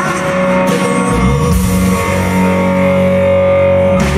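Live rock band playing an instrumental passage between sung lines: electric and acoustic guitars with drums, a long held note over the chords, and the bass coming in about a second in.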